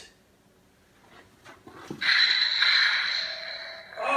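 Hasbro Black Series Kylo Ren Force FX toy lightsaber's ignition sound from its built-in speaker: after a few faint clicks, a sudden loud crackling rush with a thin high tone through it starts about halfway in and eases off over the last two seconds.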